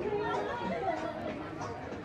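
Background conversation: people talking and chatting, with no other distinct sound standing out.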